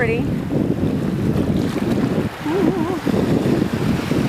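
Wind noise on the microphone over shallow surf washing in the water, with a brief hummed voice sound a little past halfway through.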